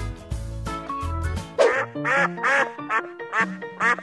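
Duck quacking repeatedly, a quick run of loud quacks starting about one and a half seconds in, over background music with a steady beat.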